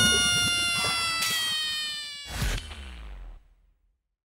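End-screen outro jingle: a sustained chord of several notes that slowly slide down in pitch as it fades, with a second thump about two and a half seconds in, then it dies away shortly before the end.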